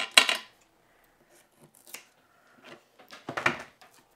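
Foam mounting tape being pulled off a large roll and cut with scissors: two short sounds, one just at the start and another a little after three seconds in.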